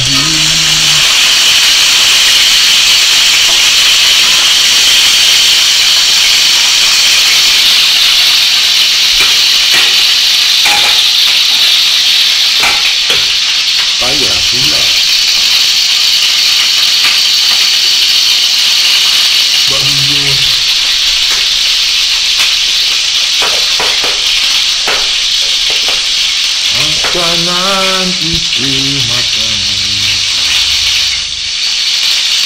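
Whole fish frying in hot oil in a wok: a loud, steady sizzle that swells as the fish goes into the pan and eases slightly as it goes on, with a few knocks midway.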